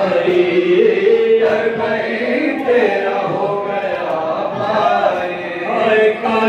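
A group of men reciting a noha, a Shia mourning lament, chanted into microphones in long, held melodic lines.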